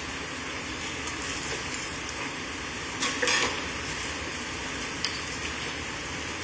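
Courtroom room tone during a pause in speech: a steady low hiss with faint small clicks and rustles, and one brief soft noise about three seconds in.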